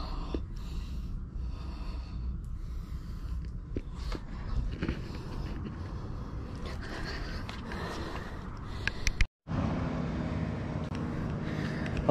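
Low steady rumble of wind on an action camera's microphone, with a man's breathing and a few light knocks; the sound cuts out briefly about nine seconds in.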